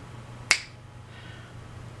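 A single sharp click about half a second in, over a faint low steady hum.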